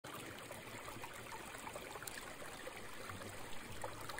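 Shallow stream running over pebbles: a steady, fairly faint trickling of water.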